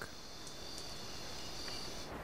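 Tropical forest ambience with insects keeping up a steady high-pitched drone over a soft background hiss.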